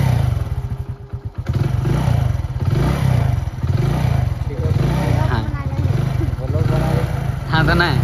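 Motorcycle engine running close by just after starting, a low even putter that grows louder about a second and a half in.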